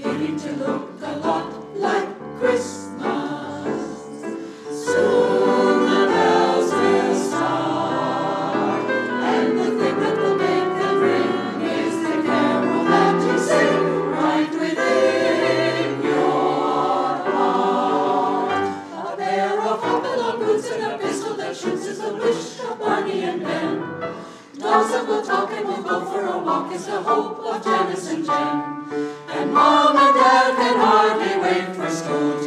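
Mixed choir of men's and women's voices singing in parts, with short breaks between phrases about two-thirds of the way through.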